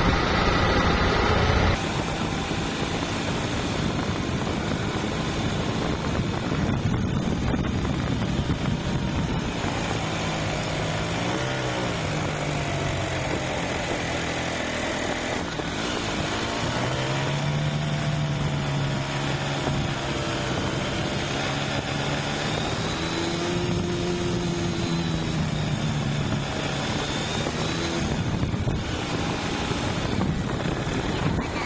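Small motorcycle engine running under way, its pitch rising and falling with the throttle, over a steady rush of wind and road noise.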